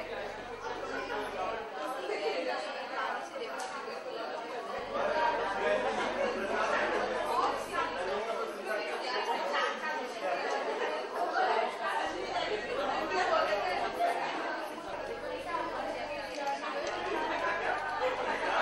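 Only speech: people talking, with the chatter of other voices mixed in.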